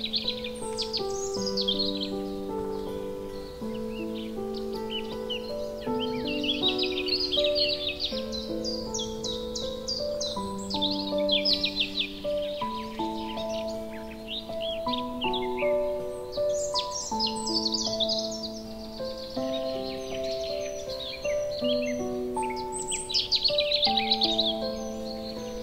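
Slow, calm piano melody with songbird song over it. Bursts of rapid, high chirps and trills come and go every few seconds.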